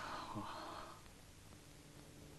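A man's soft breathy chuckle, lasting about a second, followed by quiet soundtrack hiss with a faint hum.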